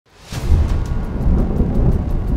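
Deep cinematic rumble with crackling, swelling up out of silence within the first half second and then holding loud.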